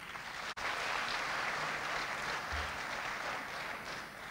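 Large audience applauding, a steady even clatter of many hands that starts up fully about half a second in.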